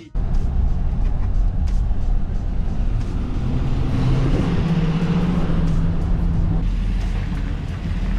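Car engine and road noise heard from inside a moving car, a steady low rumble. The engine note rises a little about four seconds in and holds for a couple of seconds before easing off.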